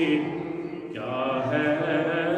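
A man chanting in long, held melodic phrases into a microphone. The voice drops away briefly in the first second, and a new phrase starts about a second in.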